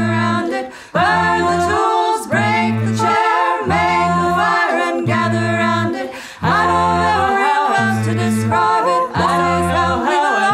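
A cappella vocal music with no instruments: several layered voices sing in short repeating phrases, low held notes beneath higher, moving lines.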